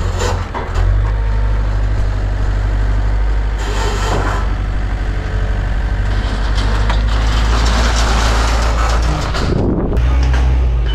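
Forklift engine running steadily with a low drone as its long forks draw back out from under a pallet of sod set on a trailer, with a few knocks near the start.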